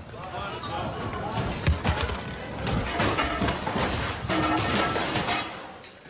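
Loose lounge chairs, tables and planters sliding and banging into each other across the floor of a cruise ship rolling heavily in a storm: a run of knocks and crashes, the loudest about a second and a half in, with people's voices among them.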